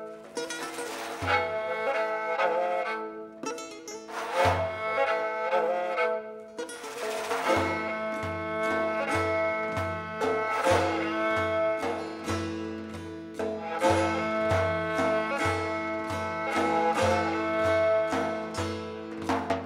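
Instrumental Persian classical music: a kamancheh (bowed spike fiddle) and a setar (long-necked lute) playing together, with a frame drum. The drum gives a few single low strokes, then settles into a steady beat from about eight seconds in.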